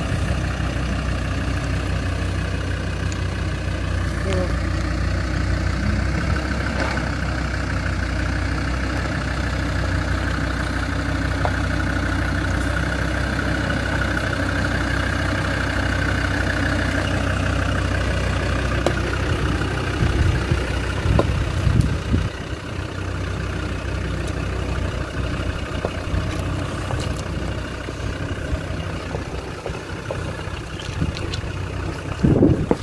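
Land Rover Discovery's engine running at a low idle as it crawls down a rutted, stony track, with a few knocks around twenty seconds in.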